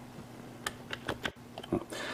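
A few faint, separate computer keyboard clicks, spread over two seconds, with a low steady hum underneath.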